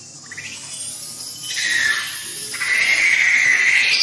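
Infant macaque screaming in distress: a few short squeaks, then two loud, high-pitched, drawn-out screams. The first starts about a second and a half in; the second is longer and runs on until the adult grabs it near the end.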